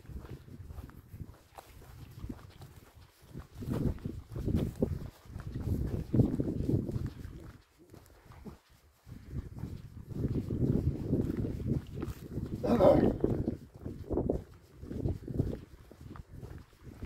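Gusts of wind buffeting the microphone in uneven surges of low rumble, with a brief pitched call-like sound about 13 seconds in.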